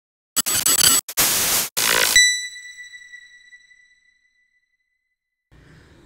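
Logo intro sound effect: three short bursts of loud noise in the first two seconds, ending on a single high ringing tone that fades out over about two seconds.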